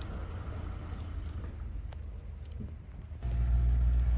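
A low steady rumble, which gets louder a little after three seconds in.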